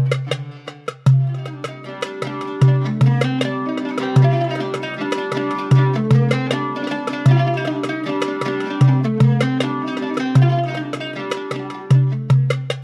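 An oud played with a risha struck over the sound holes, the technique for a soft, mellow tone and a wash of sound. Quick plucked notes run over a rhythmic pattern of deep low notes.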